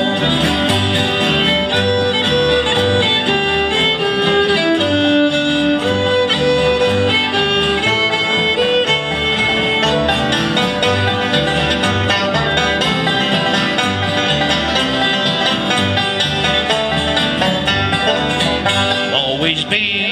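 Instrumental break of a bluegrass gospel song: a fiddle plays the melody over strummed acoustic guitars and a plucked upright bass keeping a steady beat.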